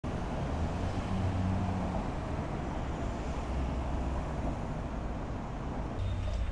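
A steady low rumble of passing road traffic.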